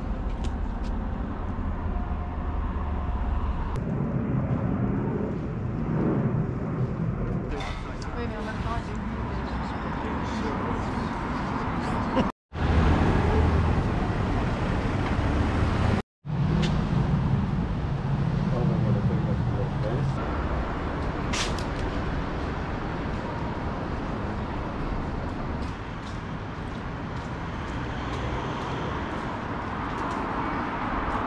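City street ambience: steady traffic noise with passing cars and indistinct voices of people nearby. It drops to silence twice for an instant, about midway through.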